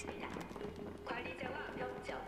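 Faint audio from a TV episode playing in the background: quiet voices with light tapping sounds.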